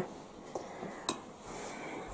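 A spoon lightly clinking against a ceramic saucer of spice, twice: a faint tap about half a second in and a clearer clink about a second in, with quiet room sound around them.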